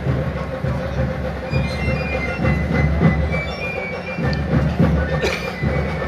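A steady low rumble of ambient noise in a square where a crowd is gathering, with music in the background.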